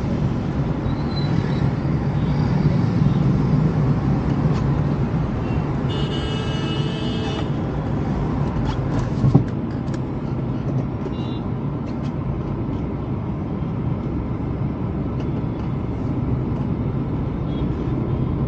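Steady hum of a car and slow city traffic heard inside the car's cabin. About six seconds in, a vehicle horn sounds for about a second and a half. A single thump comes about two seconds later.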